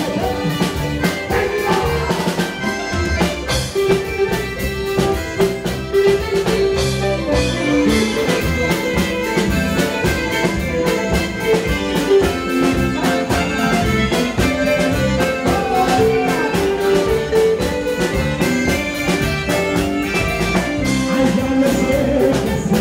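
Live band playing loud dance music with electric bass guitar and a steady drumbeat, in an instrumental passage without singing.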